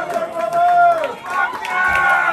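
Voices in a live-music crowd holding long sung or shouted notes that drop off at the end of each, with several voices overlapping near the end.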